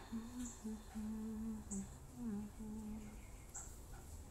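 A woman humming a short tune in a series of held notes that step up and down in pitch, stopping about three seconds in.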